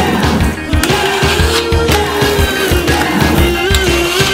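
Skateboard wheels rolling on concrete, mixed under music with a steady beat.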